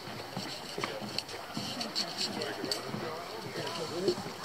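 Footsteps knocking on a wooden plank boardwalk as several people walk, with people's voices talking in the background.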